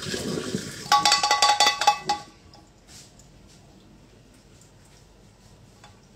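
Hot water poured from a pot into a kitchen sink, then about a second of metal clattering and ringing as the pot knocks against the sink.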